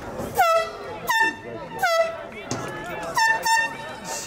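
A handheld air horn sounding five short blasts: three spaced under a second apart, then a quick pair near the end.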